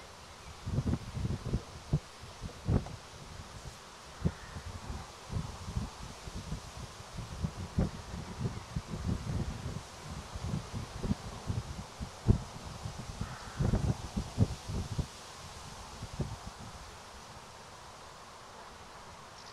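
An Arabian horse's hooves thudding dully and unevenly on a sand arena surface as it is ridden. Leaves rustle in the wind behind. The thuds fade out near the end.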